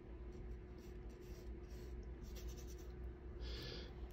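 Faint, soft scratchy brushing of a paintbrush dragging oil paint across the canvas, with a somewhat louder stroke near the end, over a faint steady hum.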